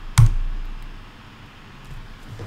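A single sharp keystroke on a computer keyboard, the Enter key pressed to run a typed command, fading over about a second into faint room hiss.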